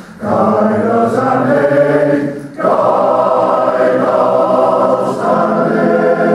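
Welsh male voice choir singing a song in full harmony, with a short break between phrases about two and a half seconds in.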